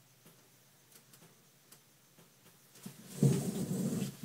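Near silence with a few faint ticks, then, about three seconds in, a sudden loud stretch of rustling and knocking close to the microphone.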